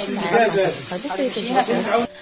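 Grated carrot and onion sizzling in oil in a pot as they are stirred, a steady high hiss. A person's voice talks over it.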